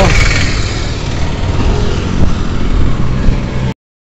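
Small engine of an auto-rickshaw running as it passes close by, under heavy wind rumble on the microphone. The sound drops out to silence for a moment just before the end.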